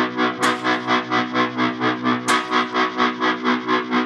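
Electric guitar played through a Yamaha practice amp with distortion: held chords pulse evenly about three to four times a second, with a new chord struck about half a second in and again just after two seconds.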